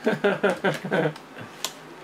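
A man laughing in several short, quick bursts over about a second, then a single sharp click.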